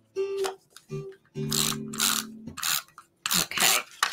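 A woman laughing in several short, breathy bursts over background music.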